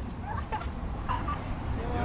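The tail of a laugh at the start, then outdoor background: a steady low rumble with a few faint, short, distant calls.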